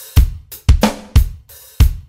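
Drum beat with kick, snare and cymbal hits, about two a second: the intro of a recorded children's chant track for an English course.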